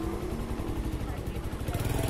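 A two-wheeler's small petrol engine running steadily while being ridden.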